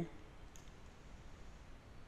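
A single faint computer mouse click about half a second in, over quiet room hiss.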